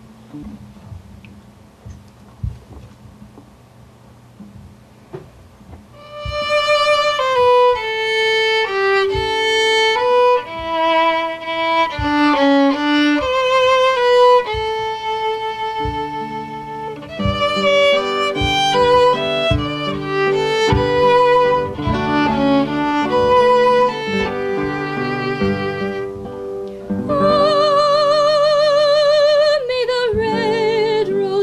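Violin playing a slow melody with many long held notes over acoustic guitar accompaniment. The violin enters about six seconds in, after a few soft guitar notes. Near the end a woman's singing voice takes over the melody.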